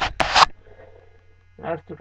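Fabric rustling and rubbing with handling noise close to the microphone, loudest in the first half-second and then dying away, over a steady low electrical mains hum.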